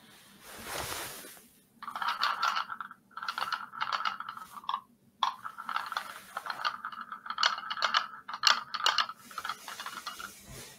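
Small sphere magnet rattling against the cup it spins in on top of an electromagnetic coil, a fast dense chatter that breaks off briefly about halfway and resumes. A faint steady hum runs underneath.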